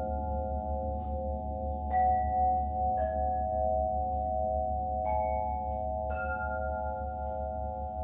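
Ringing metal sound-bath percussion: several sustained, gently wavering mid-pitched tones over a steady low hum. Four new notes are struck, about two, three, five and six seconds in, each adding a higher bell-like tone that rings and fades.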